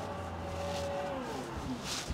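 Power liftgate motor of a 2023 Chevrolet Tahoe running as the tailgate opens. It gives a steady hum and whine that stops about a second in, with the whine falling in pitch over the next second as the gate reaches the top.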